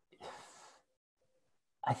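A short, faint audible breath, a sigh-like exhale from a man pausing before he answers, with silence around it; he starts speaking again near the end.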